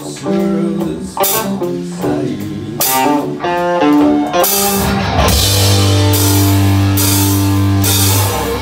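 Live rock band playing an instrumental passage: electric guitars pick a melodic phrase punctuated by drum hits about every second, then about five seconds in the full band comes in on a heavy held chord with cymbals washing over it.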